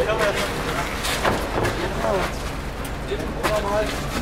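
Several men talking and calling out to one another in German while heaving a heavy wooden sculpture, with a couple of short knocks about a second in and near the end.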